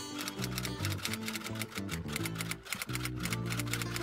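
Background music with a rapid, continuous run of typewriter key clicks, a typewriter sound effect.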